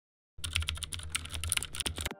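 Computer keyboard typing sound effect: a quick run of key clicks over a low hum, starting about a third of a second in.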